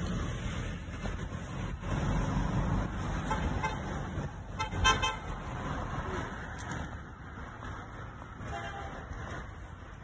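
Street traffic: a motor vehicle running past, with a short vehicle horn toot about five seconds in that is the loudest sound.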